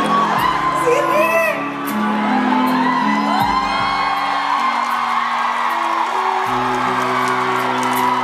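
Live concert music with held low chords that change every second or so, under an audience whooping and screaming.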